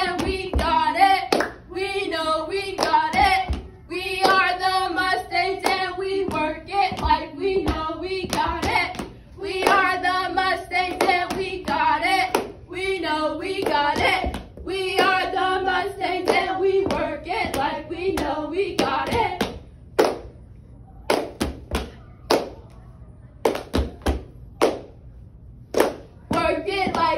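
Girls chanting a cheer in unison in a steady, repeating rhythm, with hand claps mixed in. About 20 seconds in the chant stops, and for the rest there are only separate sharp claps and thumps.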